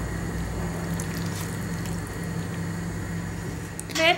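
Lemon juice poured from a plastic jug onto a bowl of bulgur salad: a steady, soft trickle over a low steady hum.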